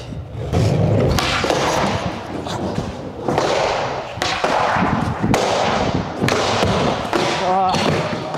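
Skateboard wheels rolling over wooden ramps and boxes, broken by sharp clacks and thuds about once a second as the board pops, lands and grinds on ledges. The run ends in a bail when the tail taps a ledge and throws the skater forward.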